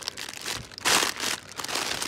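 Clear plastic wrapping crinkling and crackling as it is handled and squeezed in the hand, loudest in a burst about a second in.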